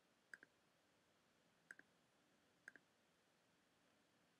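Near silence with three faint computer mouse clicks, each a quick double tick of the button pressed and released, about a second apart, made while selecting mesh edges one by one.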